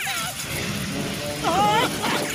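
Cartoon soundtrack: a low rumbling sound effect under background music, opening with a quick falling swoosh and ending with a short vocal cry.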